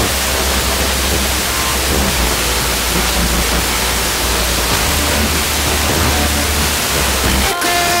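Blaupunkt car radio on a weak, distant FM station: loud steady hiss with faint music showing through. Shortly before the end the hiss drops away and the music comes through more clearly as the signal briefly strengthens.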